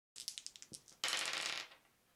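Polyhedral dice thrown onto a wooden table: a quick run of separate clicks as they land and bounce, then a denser rattle for about half a second as they tumble together, fading out.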